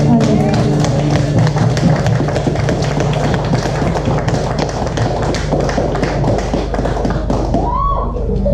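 Music with a steady low drone, overlaid by a dense, irregular run of sharp taps, with voices in the background.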